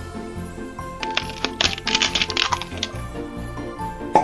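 Cartoon sound effect of an eggshell cracking: a quick run of sharp crackles starting about a second in and lasting under two seconds, over background music.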